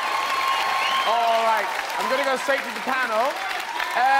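Studio audience applauding and cheering, with individual voices shouting out over the steady clapping.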